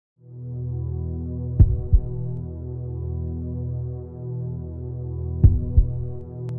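A low, steady electronic drone with two heartbeat-like double thumps, lub-dub, about four seconds apart, as an intro sound effect.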